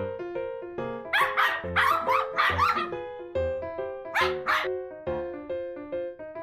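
Small dog barking in a quick run of sharp yaps, then two more barks a little later, over cheerful background music.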